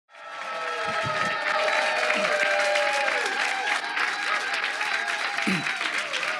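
Theatre audience applauding over music with held tones, fading in during the first half second.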